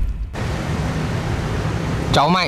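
The low end of the intro music dies away in the first fraction of a second, then a steady, even hiss of outdoor background noise begins and runs on.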